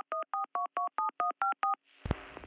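Touch-tone telephone keypad dialing: a quick run of about nine short two-note beeps, four or five a second, that stops near the end.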